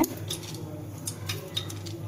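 A knife finely chopping green chilli seeds and pith on a plate: a few light clicks of the blade against the plate, over a steady low hum.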